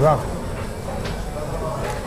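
Background chatter of voices, with a short voiced sound right at the start and a couple of light clicks.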